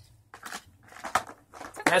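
A few light clicks and knocks of small toy cars and plastic being handled and set down on a table, with a spoken word near the end.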